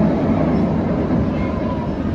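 Steel inverted roller coaster train running along its track: a steady low-pitched rumble that eases slightly toward the end.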